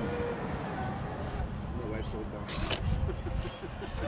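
1/10 scale RC crawler truck crawling up a dirt bank towing a trailer: a steady high electric motor whine over a low rumble, with a short crunch about two and a half seconds in.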